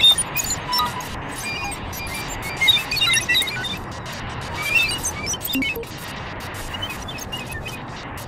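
Improvised experimental electronic music: a dense noisy texture sprinkled with short high blips and crackling clicks, with louder flurries about three seconds in and again near five seconds, thinning to a steadier hiss near the end.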